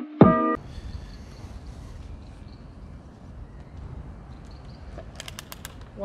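Background music ends on a held chord about half a second in. After that there is only a low, steady outdoor rumble of wind and road-like noise, with a few sharp clicks near the end.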